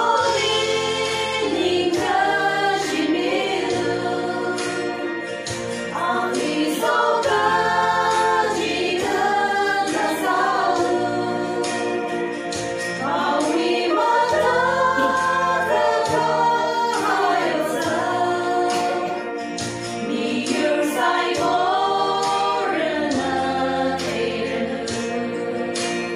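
A small women's choir singing a Tangkhul gospel song chorus, over low sustained accompaniment notes that change every couple of seconds.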